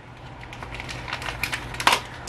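Plastic lure packaging crinkling and clicking as it is handled, with one sharper click near the end.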